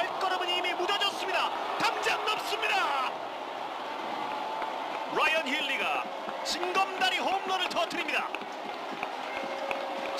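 Baseball TV broadcast sound: commentators' voices over a steady stadium crowd din as a home run is hit.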